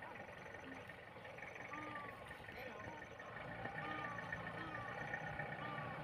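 Faint outdoor ambience with a low engine hum that grows a little louder from about halfway through, and a few short rising-and-falling calls.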